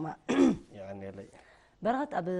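A person clears their throat once, sharply, then says a few quiet words.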